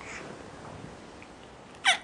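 A baby gives one short, high-pitched squeal that glides downward, just before the end. Before it there is only faint room noise.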